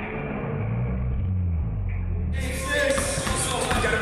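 Muffled, bass-heavy music, then about two seconds in a sudden switch to live gym sound: a basketball bouncing on a hardwood court, echoing in a large hall.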